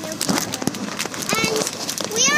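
Handling noise: a quick run of rustles and knocks as a blind-bag toy package is handled close to the phone. A girl's high-pitched voice speaks briefly about one and a half seconds in.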